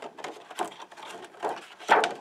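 Stiff clear acetate sheet and card box being handled and pressed into place by hand: irregular crackles and light taps, the loudest just before the end.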